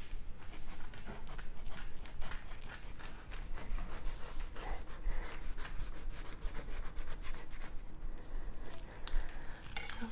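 A large kitchen knife sawing into the thick, knobbly rind of a whole jackfruit: a steady run of irregular rasping, scraping strokes.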